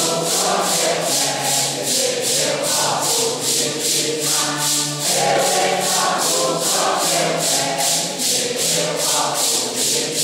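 A congregation singing a Santo Daime hymn in unison, with maracas shaking in a steady beat of about three strokes a second.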